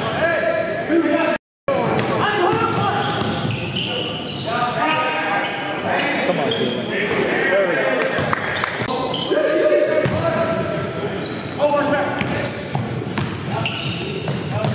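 Live game sound of indoor basketball: a ball dribbling and bouncing on the court, with players calling out, echoing in a large gym. About a second and a half in, the sound drops out completely for a moment at an edit.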